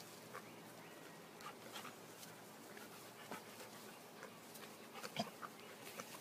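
Faint sounds of dogs wrestling in play: scattered short whimpers and small sounds, the sharpest about five seconds in.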